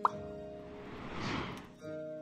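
Instrumental background music with sustained notes. A short, sharp blip comes at the start, and a rush of noise swells up and fades away about a second in before the notes resume.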